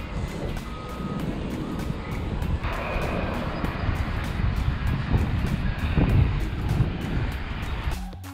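Wind buffeting a camera microphone high up a sailboat mast: a low, gusting rumble, with faint music underneath.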